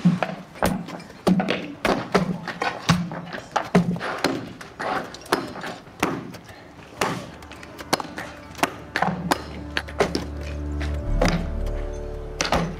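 Repeated heavy thunks of a sledgehammer and an iron breaking bar striking rock, about one or two blows a second, irregular, over background music that swells near the end.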